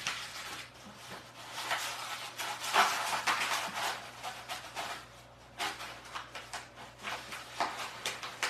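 Brown kraft paper rolled by hand into a tight scroll, rustling and crinkling in quick uneven bursts, loudest about halfway through.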